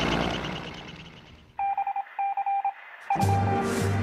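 A noisy rumble fades away over the first second and a half. Then come a few short electronic beeping tones in quick pulses, and about three seconds in, music with a steady beat starts.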